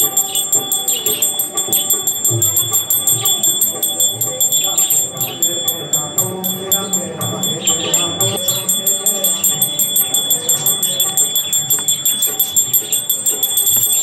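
Brass puja hand bell rung rapidly and without a break during Hindu worship offerings, a fast, even, high ringing that stops abruptly at the end.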